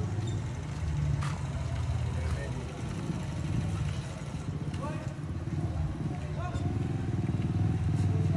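A steady low engine rumble, like a vehicle running close by, with faint indistinct voices and a few sharp clicks.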